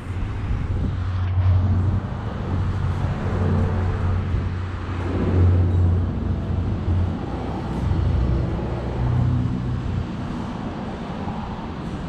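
Low, steady rumble of road traffic and open-air background noise, swelling and easing a little, with no single clear event.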